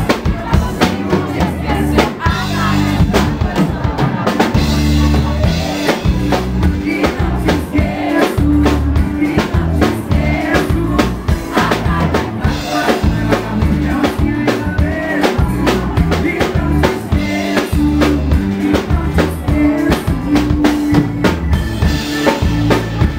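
Live band playing a song with a drum kit keeping a steady beat over a heavy bass line, and a male singer singing into a handheld microphone.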